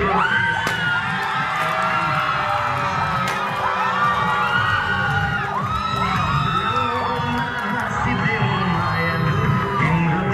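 Audience cheering and whooping, many voices rising and falling over one another, over loud dance music with a steady beat.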